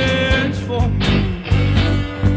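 Live band playing a rock number: electric guitars, bass guitar and percussion keeping a steady beat. A held melody note ends about half a second in.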